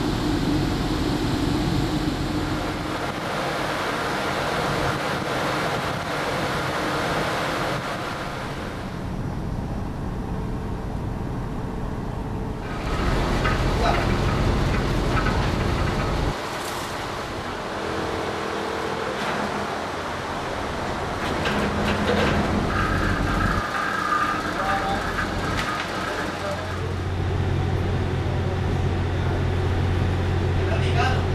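Steady machinery hum and rumble heard from a ship's deck, with a faint murmur of voices. The sound changes abruptly several times.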